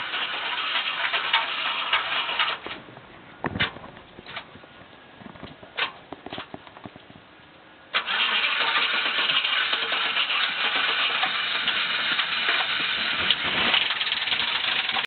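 A 2002 Chevrolet Silverado 2500HD's engine being cranked by its starter on a jump pack for about two and a half seconds. After a quieter pause with a few clicks, it is cranked again, starting suddenly about eight seconds in and going on steadily.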